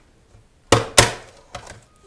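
Amazon Basics vacuum sealer's plastic lid being unlatched after sealing a bag: two sharp clicks a quarter-second apart as the latches release, followed by a few lighter clicks as the lid is lifted.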